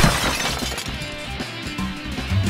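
Background music with a sudden loud crash right at the start, like breaking glass, whose ringing decay trails off over the next second.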